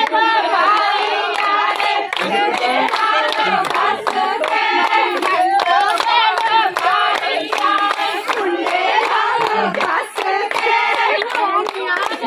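Women singing Punjabi boliyan together, a loud sung chant kept going with frequent hand-clapping in time.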